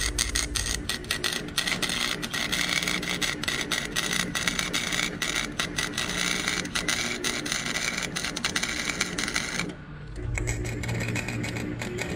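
Chicago Electric flux-core wire welder running a bead along the seam between two steel 55-gallon drums: the dense, steady crackle of the arc. It stops briefly a little under ten seconds in, then starts again.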